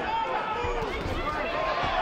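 Arena crowd noise at a live boxing bout: many voices shouting and talking at once, at a fairly even level.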